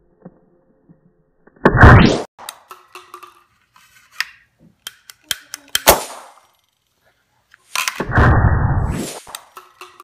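Butane lighter gas igniting inside two plastic cups taped rim to rim: a loud pop-and-whoosh about two seconds in that blows one cup off, followed by a few light plastic clicks and knocks. The same blast is heard again, drawn out over about a second, near the end as a slow-motion replay.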